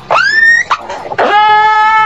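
Orca (killer whale) calls: a short squealing call that sweeps up in pitch, then about a second in a longer call held on one pitch.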